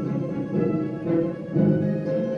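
Orchestral film-score music led by low bowed strings holding sustained notes that swell and fall about once a second.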